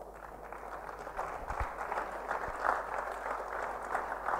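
Audience applauding, a steady patter of many hands clapping that starts suddenly and stays fairly soft.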